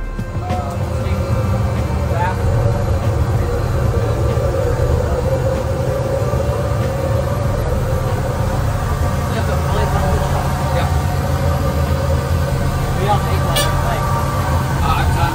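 Steady low rumble and hum of running equipment inside the parked C-5M Super Galaxy's fuselage, loud and unchanging, with faint indistinct voices over it.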